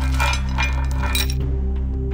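Background music with a steady low drone. Over it, a burst of metallic clinking and jingling rings out during the first second and a half.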